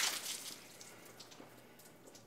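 Water from an upturned mason jar splashing down over a man's head and shirt, the splash dying away within about half a second into faint drips. The jar had no screen on it, so the water fell out as soon as the card was pulled away.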